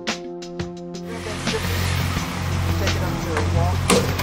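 Background music with struck notes stops about a second in, giving way to work-site sound: a steady low engine hum, voices, and a sharp knock near the end.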